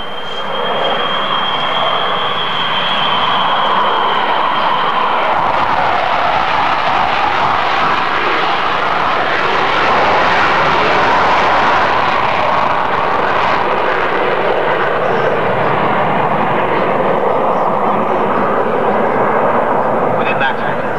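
RAF Nimrod jet with four Rolls-Royce Spey turbofans flying a display pass, a loud, steady jet rush that swells through the middle and eases slightly toward the end. A thin, high, steady whine rides over it for the first five seconds or so.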